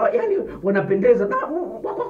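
A man speaking animatedly, his voice rising and falling.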